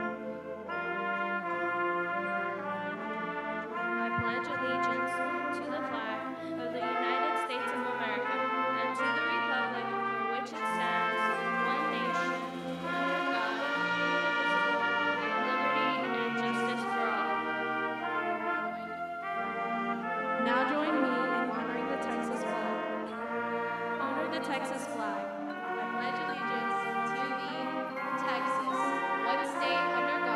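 Band music led by brass, with sustained chords that change about every second.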